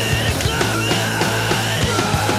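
Loud heavy punk/sludge rock: a distorted electric guitar riff over a held bass note and fast, driving drums.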